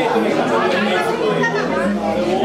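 Chatter: several people talking at once, close by in a room.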